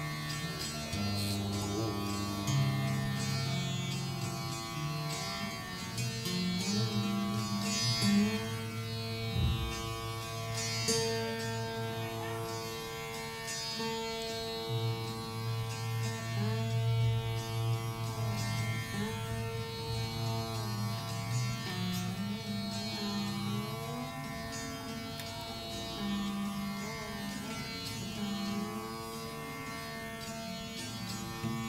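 Rudra veena playing a slow dhrupad alap in Raga Malkauns: low notes held long and bent in slow pitch glides, with scattered string plucks.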